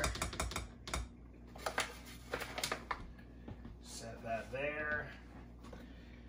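Hand-worked flour sifter clicking rapidly as flour is sifted into a bowl, with a fast run of clicks in the first second and more scattered clicks up to about three seconds in.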